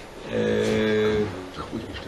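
A man's drawn-out hesitation hum, held flat at one low pitch for about a second.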